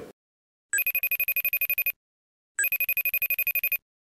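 Phone ringtone for an incoming FaceTime call: two bursts of rapid trilling ring, about ten pulses a second, each a little over a second long with a short pause between.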